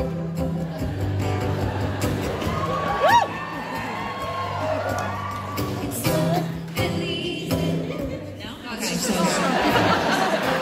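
Acoustic guitar playing steady low notes through the hall's sound system, with a single rising-and-falling whoop from the audience about three seconds in and a swell of crowd cheering near the end.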